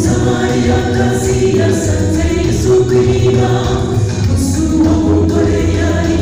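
A choir singing a gospel song in Kinyarwanda, with a steady low bass underneath.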